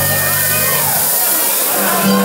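A live band's last chord ringing out and dying away about a second in, under cheering and noise from the bar audience.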